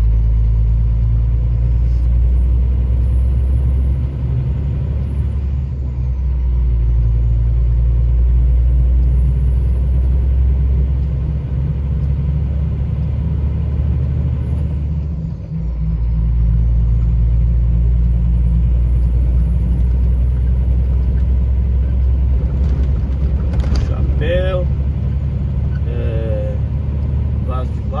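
Steady low drone of a truck's engine and road noise heard from inside the moving cab, with a brief dip about halfway through before it picks up again.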